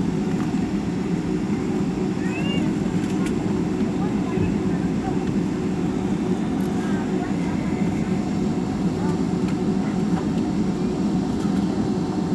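Steady cabin noise of a Boeing 757 taxiing, heard from inside the cabin: the jet engines at idle give a constant low hum with a few steady tones in it.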